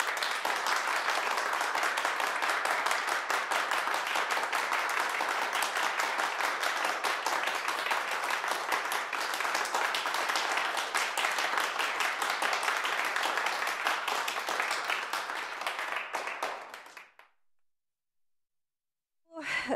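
A group applauding: many hands clapping densely and steadily, starting abruptly and dying away near the end.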